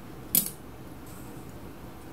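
A single sharp snip about a third of a second in: scissors cutting through a strip of elastic band.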